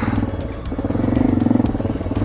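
Single-cylinder engine of a Honda NX650 Dominator motorcycle running steadily as the bike rides along a grassy dirt track, with background music underneath.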